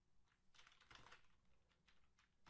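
Faint typing on a computer keyboard: a short run of keystrokes about half a second to a second in, then a stray click or two.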